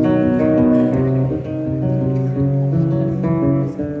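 Steel-string acoustic guitar played solo, a run of chords and notes ringing out and changing every half second or so.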